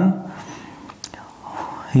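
Marker pen writing on a whiteboard: faint scratching with a brief high squeak, and a single click about a second in.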